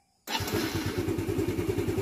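Small scooter engine starting about a quarter second in, then running at a steady idle with an even, rapid beat.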